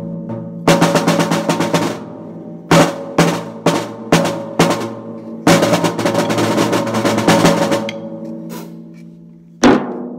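Acoustic drum kit played with sticks: bursts of fast strokes on the snare and toms, separated by single hits, with the drums ringing between strokes. The playing thins out near the end, and a loud hit lands just before it ends.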